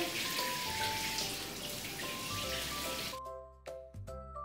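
Shower water spraying in a steady hiss, cutting off abruptly about three seconds in, over soft background music.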